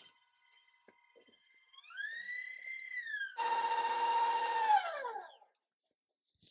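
Stand mixer motor whining as it drives a wire whisk: the pitch climbs about two seconds in, the whine gets much louder a second or so later, then it falls in pitch and dies away as the motor is switched off and winds down, stopping about five and a half seconds in.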